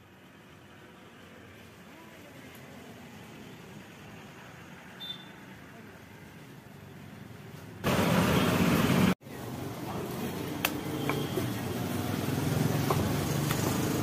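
Background traffic noise, slowly growing louder, broken about eight seconds in by a loud burst of noise lasting a second and a half that cuts off suddenly. After it the traffic noise is louder and steady, with a few light knocks as a wooden rolling pin works the parotta dough on the counter.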